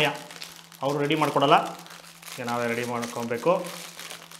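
Aluminium foil wrapper crinkling as it is unwrapped by hand, under two short stretches of talking.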